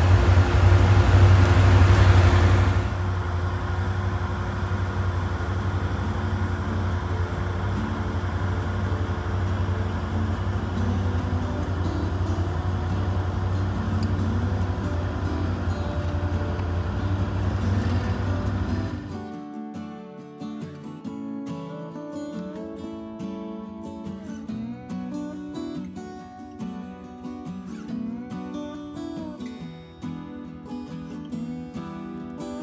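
Can-Am Outlander ATV engine running steadily, louder for the first few seconds. About two-thirds of the way in the engine stops and acoustic guitar music takes over.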